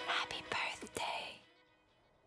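Faint whispery voice with a couple of soft clicks, dying away to near silence about a second and a half in.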